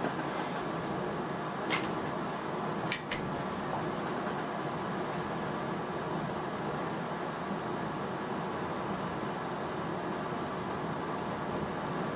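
Steady mechanical hum in a small room, with two sharp clicks about a second apart near the start as a break-barrel air rifle is handled for cocking and loading.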